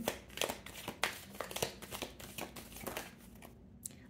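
A deck of tarot cards being shuffled by hand: a run of quick, irregular card clicks and slides that thins out near the end, as a card jumps out of the deck.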